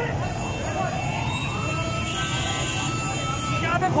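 A siren winding up in pitch over about a second, then holding one steady high tone until just before the end, over street traffic noise and voices.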